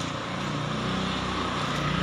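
A motor vehicle's engine running steadily, a low hum that slowly grows louder.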